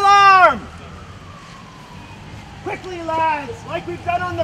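A man shouting drawn-out drill commands: one long held call that drops off about half a second in, then after a quieter gap a run of short shouted calls from just under three seconds in.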